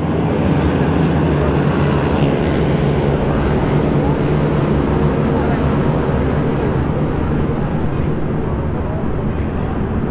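A motorcycle engine idling steadily close by, an even low-pitched note that does not rev.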